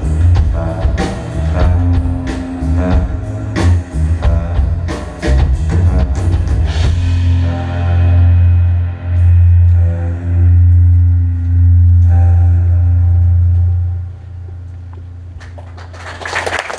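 Rock band playing live: drum kit and guitars hit hard for the first seven seconds or so. Then the drumming stops and long low notes ring out, swelling and dipping, before dropping away about two seconds before the end as the song closes.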